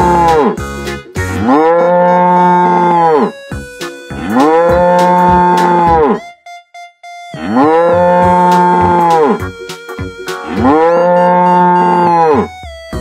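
A cow's long moo, the same call played over and over about every three seconds, each lasting about two seconds. Short snatches of music fill the gaps between the moos.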